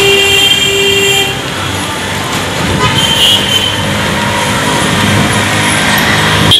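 Busy city road traffic: engines and road noise throughout, with vehicle horns. There are two horn blasts in the first second or so and another short honk about three seconds in.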